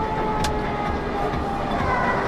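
Road and engine noise from a dash camera in a moving semi truck's cab, with a steady hum and a single click about half a second in.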